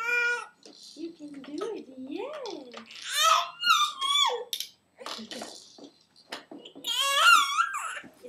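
A baby vocalizing in high, wavering squeals and coos. The loudest come at the start, about three seconds in and near the end, with a few short clicks in between.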